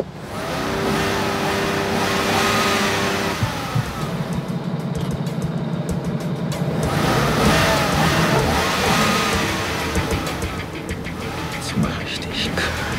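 A car engine revving and accelerating as the driver works the throttle, with music playing over it.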